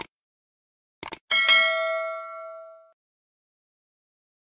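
A click, then a quick double click about a second in, followed at once by a bright bell ding that rings and fades over about a second and a half. These are the cursor-click and notification-bell sound effects of a YouTube subscribe-button animation.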